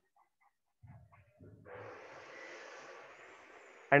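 Pen scratching on paper as a word is written by hand: a few faint taps, then a faint, even scratch lasting a couple of seconds.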